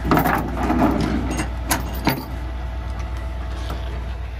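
A diesel pickup idling as a steady low hum. Over it, a flurry of metallic clicks and rattles in the first two seconds, with a few more sharp clicks up to about two seconds in.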